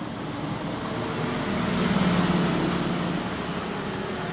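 Road traffic: a passing vehicle's engine hum swells to a peak about halfway through, then fades, over a steady background of street noise.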